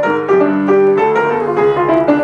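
Solo jazz piano improvisation on an acoustic grand piano: a moving line of single notes in the middle register over held lower notes.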